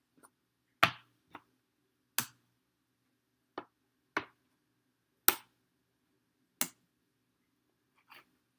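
Checkers pieces clicking against the board as they are moved and taken off by hand: about seven sharp, separate clicks at uneven intervals, the loudest a little over five seconds in.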